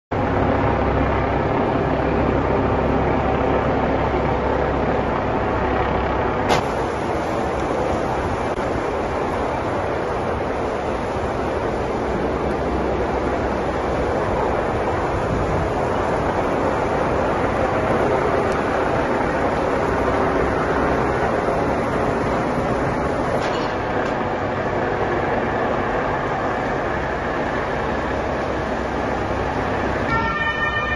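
A large street-barricade fire of wood and rubbish burning with a steady rushing noise, with a sharp snap about six seconds in and a fainter one near the end.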